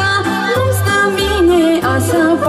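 A young female singer performing a Romanian folk song into a microphone, her voice sliding and ornamenting the melody, over amplified backing music with a steady bass beat.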